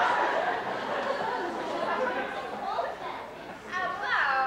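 Audience laughter dying away into murmured chatter, with a voice starting to speak near the end.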